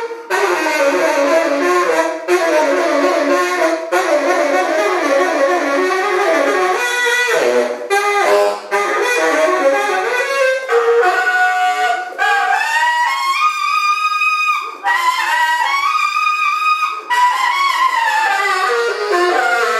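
Tenor saxophone played solo: fast, dense runs of notes broken by brief pauses for breath, then, from about twelve seconds in, longer held notes that bend upward in pitch.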